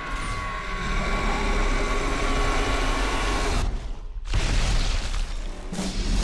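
Film trailer sound design: a low rumble with held sustained tones, cut off abruptly about three and a half seconds in for a brief silence, then a loud boom-like hit.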